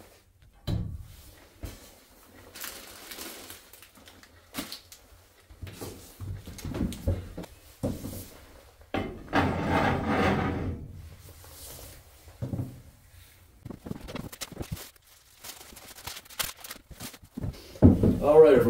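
Scattered knocks, bumps and rustling of things being handled and moved about, with a longer scraping or creaking sound about nine seconds in.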